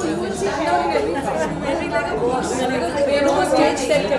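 A group of people chattering over one another, several voices talking at once with none standing out.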